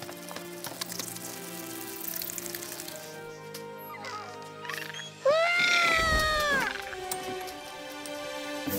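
Background score music, and about five seconds in a loud, drawn-out cry lasting about a second and a half that rises, holds and then drops away.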